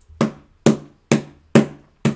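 Four knocks about half a second apart: a hand tapping on the cover of a hardbound Bible.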